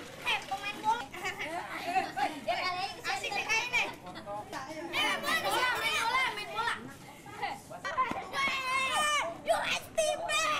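A group of children shouting and chattering over each other in Indonesian, with a run of high-pitched wavering calls near the end.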